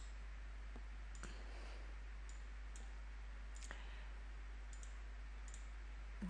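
Faint computer mouse clicks, about eight of them spread irregularly across a few seconds, over a low steady hum.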